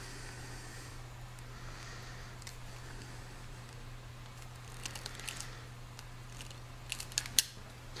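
Hand crimping tool clicking as it squeezes insulated blade terminals onto wire ends: a few short sharp clicks, several close together near the end, over a steady low hum.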